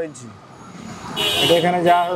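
A person speaking, after a brief pause of about a second.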